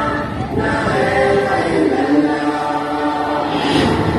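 A group of voices singing, in held notes that change pitch about every half second, as the song accompanying a dance.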